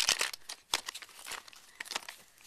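Toys being rummaged through in a plastic bin: crinkly rustling and small clatters, densest in the first second and thinning out after.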